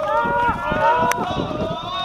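Several voices chanting together in long drawn-out calls at different pitches, with irregular low thumps underneath.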